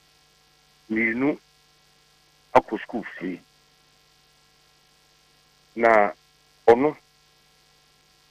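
A steady electrical mains hum, with several short snatches of a voice over a telephone line breaking in.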